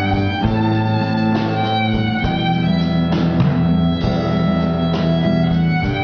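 A small acoustic ensemble of bowed cello, violin and guitar playing together, the cello drawing long low notes up close. Short struck accents fall about once a second under the held notes.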